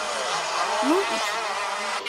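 Several go-kart engines buzzing at high revs together, their pitch sweeping up and down.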